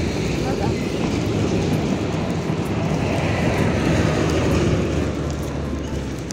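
Road traffic: a passing motor vehicle's low rumble and tyre noise, building to about four and a half seconds in and then easing off.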